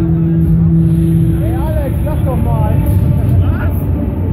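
Loud, dense low rumble of a Break Dance fairground ride spinning, with a steady hum that stops about one and a half seconds in. A voice calls out over it about two seconds in and again shortly before the end.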